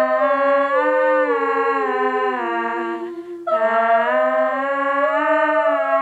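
Layered female vocals, looped and stacked in harmony through a Boss VE-20 vocal processor, singing held, wordless notes that glide slowly between pitches. The voices break off briefly about three seconds in and then come back.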